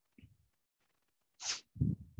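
A person's short, sharp burst of breath into a microphone about one and a half seconds in, followed by a low puff of air on the mic.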